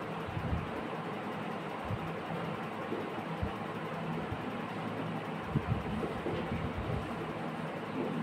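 Marker writing on a whiteboard over a steady background hum, with a few short soft taps as the marker strikes the board.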